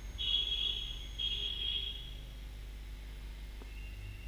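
Two high-pitched tones, each about a second long, one right after the other, over a low steady hum; a fainter steady tone comes in near the end.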